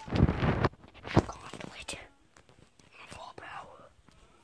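Loud rustling and thuds, with a sharp knock about a second in, then soft whispering near the end.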